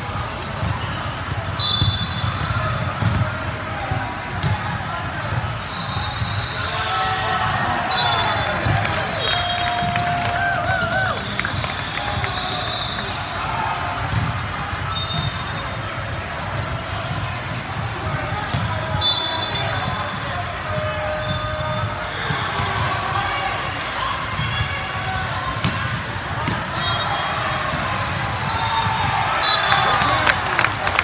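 Busy indoor sports-hall din during volleyball play: many voices, balls thudding on the hardwood floor and short high squeaks scattered throughout. Clapping and cheering break out right at the end as the point finishes.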